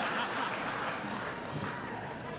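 Audience applauding and laughing after a joke, slowly dying down.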